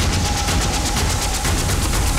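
Post-production sound effect: a fast, even rattle, like a drum roll or rapid fire, over a steady deep rumble.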